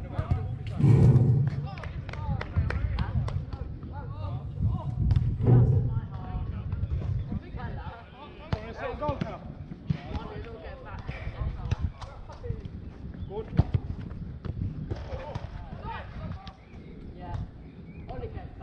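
Players calling and shouting across a five-a-side pitch, with the sharp thuds of a football being kicked and passed on artificial turf.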